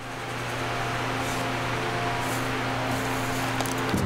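Steady hum of a greenhouse ventilation fan: a low drone with a few faint, even tones above it and no change throughout.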